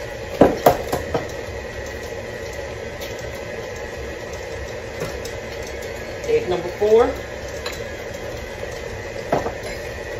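KitchenAid tilt-head stand mixer running steadily with its flat beater, beating eggs into creamed butter-and-sugar pound-cake batter in its stainless steel bowl. A few sharp clicks come about half a second in.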